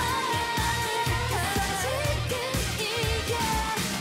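K-pop dance song with female voices singing a melody over a steady, driving beat.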